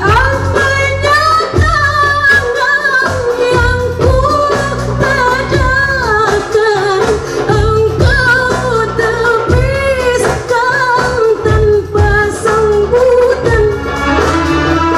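A woman singing a gambus-style qasidah song through a PA, in long, ornamented held notes. A band of two electronic keyboards and small hand drums accompanies her.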